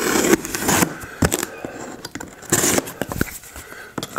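A cardboard box being handled and slit open with a utility knife, giving scraping and rustling cardboard noises in short bursts, the loudest at the start and about two and a half seconds in.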